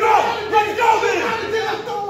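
Men yelling over one another in a heated argument, several voices overlapping so no words come through clearly.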